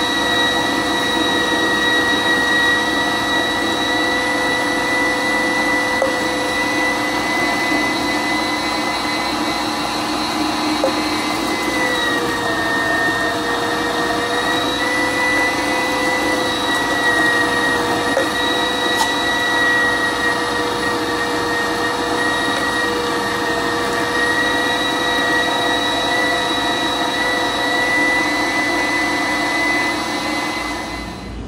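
Electric meat grinder motor running steadily while grinding chunks of meat pushed down its feed throat, a constant whine that dips slightly in pitch about twelve seconds in and holds there.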